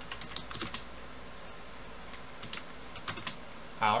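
Computer keyboard keys clicking in short runs of typing: a quick cluster of keystrokes in the first second and a few more about three seconds in.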